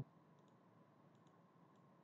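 Near silence with a few faint computer mouse clicks and a faint steady hum.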